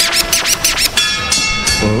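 Mixed-in sound effect of rapid, stuttering turntable scratches over a chord of several steady horn-like tones, which cuts off just before the end.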